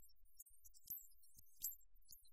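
Near silence with a few faint, sharp clicks about a second in and again shortly after.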